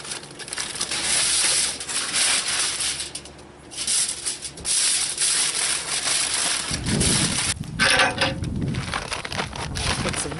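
Aluminium foil crinkling as it is crumpled and folded shut around a packet of vegetables, in spells with a short lull partway. Near the end it gives way to a low rumble.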